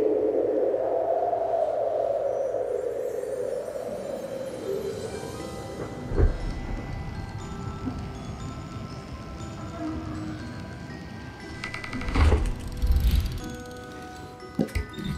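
Film soundtrack music: a swell of sound over the first few seconds, then a spread of sustained high notes, with low heavy booms about six seconds in and twice near the end.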